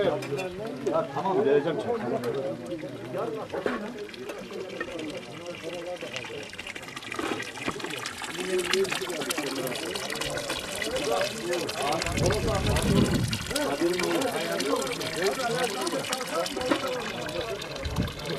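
Water running steadily, a trickle that becomes clearer about halfway through, under men's conversation.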